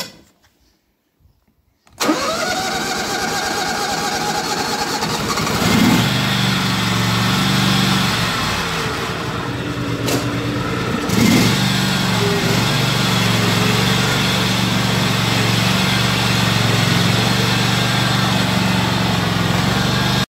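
Countax ride-on mower engine being started: the starter cranks with a rising whine for a few seconds, then the engine catches and runs steadily.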